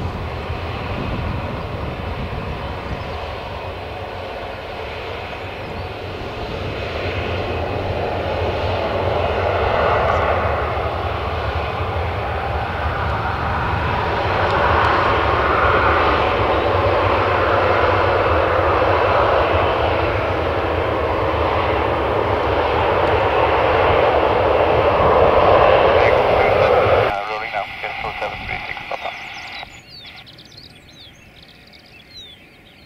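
Boeing 737-800's CFM56-7B jet engines running up to takeoff power as it rolls down the runway, growing steadily louder for about twenty seconds, with wind buffeting the microphone underneath. The sound cuts off suddenly a few seconds before the end, leaving a much quieter wind noise.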